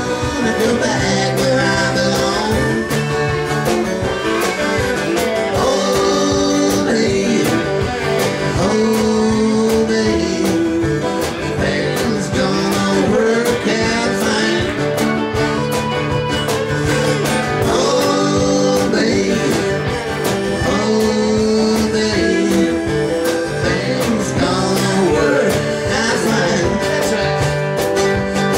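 Live band music in a country style: strummed acoustic guitars keep a steady rhythm under a lead melody line, with no sung words.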